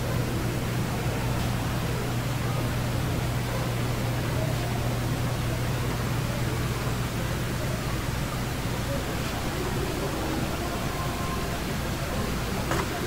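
Steady supermarket room tone: a constant low hum under an even hiss, with no distinct events.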